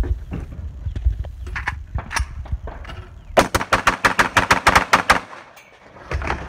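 Footsteps and knocks on a wooden shooting platform, then, about three and a half seconds in, a rapid string of about fifteen gunshots in under two seconds, about nine a second.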